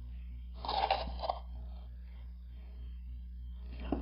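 A short crunchy scrape about a second in as hands handle cured urethane resin castings and silicone molds, over a steady low hum.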